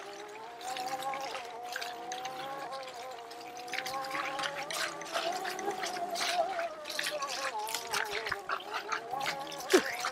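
Oset 24R electric trials bike's motor whining steadily as it rides a bumpy grass track, its pitch wavering slightly with speed, with scattered clicks and knocks from the bike over the bumps.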